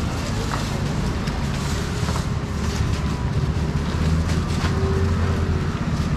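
Steady low machine hum with scattered light clicks and rustles.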